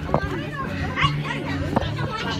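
Children's voices with three sharp knocks and rustling as a handheld phone is jostled and bumped while being carried.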